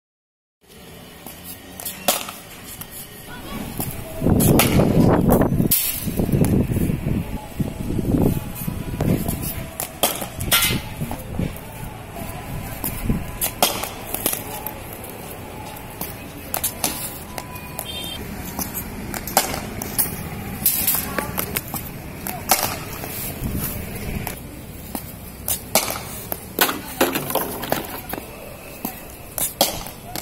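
Cricket ball and bat in throwdown practice on concrete: sharp knocks of ball on bat, concrete and a brick wall, spread irregularly throughout. A louder, rumbling noise runs from about four to nine seconds in.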